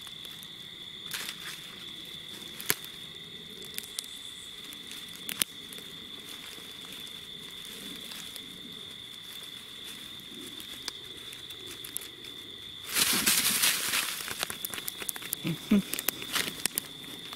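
Nine-banded armadillo rustling through dry leaf litter in scattered short crackles, over a steady high insect drone. About thirteen seconds in comes a loud three-second scramble in the leaves as the armadillo is caught.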